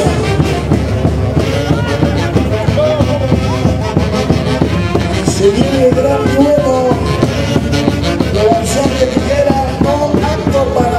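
Loud, continuous festive music with a steady beat and a bending melody line.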